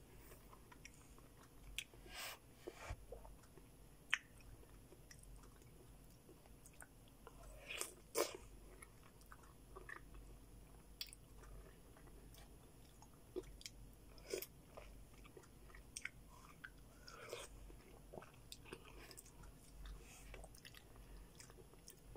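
Faint bites and chewing of melon slices, heard as scattered short mouth clicks and smacks.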